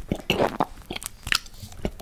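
Biting and chewing a chocolate-coated caramel and peanut ice cream bar right at the microphone: irregular crunches of the chocolate shell mixed with wet mouth sounds.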